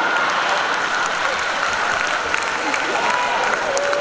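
Congregation applauding, with a few voices rising out of the crowd noise near the end.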